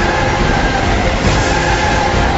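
City bus driving past close by, its diesel engine running and tyres on the road, a steady loud noise with no sudden events.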